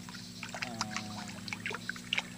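Small irregular splashes and drips of water as a hand scoops and cups koi fry in a mesh net, over a steady low hum.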